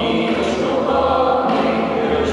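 A mixed group of men and women singing together in long held notes, accompanied by acoustic guitars, with the sound ringing in a stone church.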